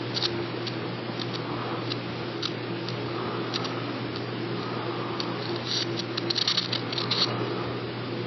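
A homopolar motor running: light, scratchy clicks of a bare wire rubbing against the edge of a spinning disc magnet, thickest about six to seven seconds in, over a steady low hum.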